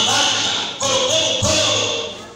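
Worship singing: a voice sings held phrases of about a second each, with a short break near the middle, over percussion that sounds like a tambourine and drum.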